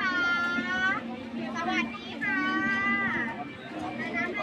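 A high-pitched voice calling out twice, each call held for about a second and bending in pitch at the end, over the chatter of a busy market crowd. A steady low hum runs underneath.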